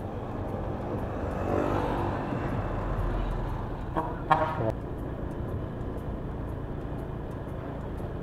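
Street traffic and engine noise: a steady low rumble that swells for a moment about two seconds in as a vehicle goes by. A short voice-like call comes about four seconds in.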